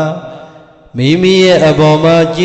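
A man's voice intoning a Buddhist chant in long, steady held notes. The first note fades away, and after a short pause the chant resumes about a second in.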